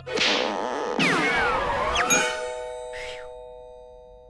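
Cartoon sound effects over music: a whoosh at the start, a tangle of sliding whistle-like pitch sweeps about a second in, and a sharp hit just after two seconds, followed by a held chime chord that slowly fades.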